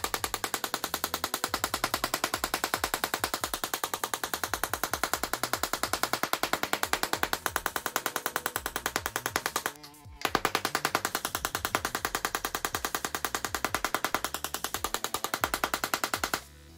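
A handheld Tesla coil firing its spark discharge in rapid, evenly spaced crackling pulses, which gives a buzzing, machine-gun-like rattle. The arc cuts out for about half a second around ten seconds in, then resumes.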